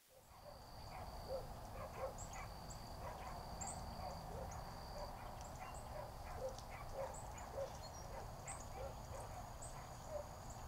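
Outdoor chorus of many short animal calls, several a second, over a faint steady high tone and scattered high chirps.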